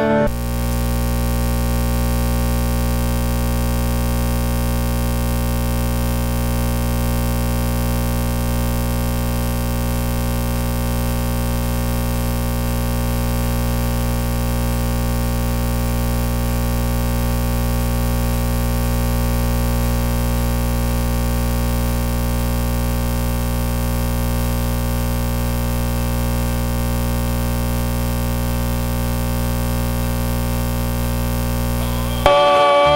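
A steady, unchanging electronic drone of fixed tones and hiss, strongest at the low end. It cuts in abruptly at the start and never varies. This is a recording or encoding glitch: the audio is stuck and the band's playing is not heard.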